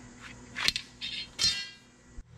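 Steel drawer slide being taken apart: a sharp click as the release lever is pressed, a short metal scrape as the inner rail slides along, then a clink with a brief metallic ring as the rail comes free of the outer member.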